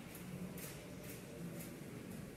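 Faint supermarket background: a steady low hum with light ticks about twice a second, as a shopping cart is pushed along.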